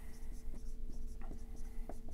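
A marker writing on a whiteboard: a few short strokes over a faint, steady electrical hum.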